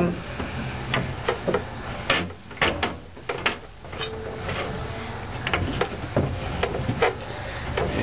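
Manual strut compressor press being lowered onto a motorcycle front shock's coil spring, giving irregular metal clicks, knocks and creaks over a steady low hum.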